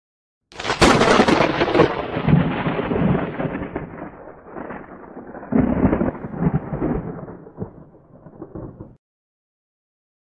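A thunder sound effect: a sharp crack about half a second in, then a rolling rumble that fades, swells again about halfway through, and cuts off suddenly near the end.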